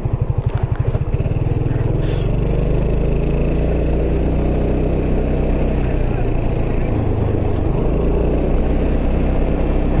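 A SYM Maxsym 400 scooter's single-cylinder engine running at road speed under steady wind noise on the microphone. A rapid rhythmic drumming in the first second comes as the tyres cross yellow stripes painted across the road.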